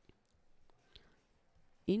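A few faint clicks and taps of a stylus on a digital writing tablet as handwriting is put down.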